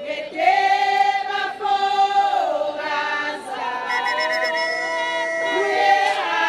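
A group of women singing a traditional Swazi song together in several voices, holding long notes, with a brief high trill about four seconds in.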